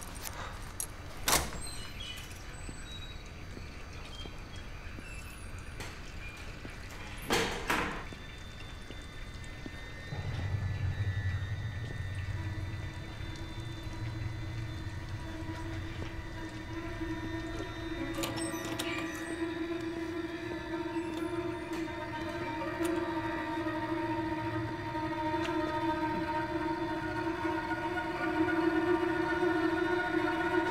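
Suspense score: a low rumble comes in about ten seconds in, joined by held droning tones that build slowly in loudness. Two sharp knocks sound in the quieter stretch before it.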